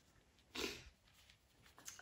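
A woman sniffles once, briefly, while crying, with a tissue held to her nose, about half a second in. A couple of faint clicks follow near the end.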